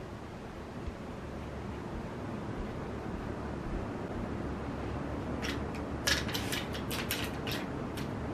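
Clothes hangers clicking and clattering against each other as a bundle is gathered up off a bed: a quick run of rattles in the second half, over a steady low room hum.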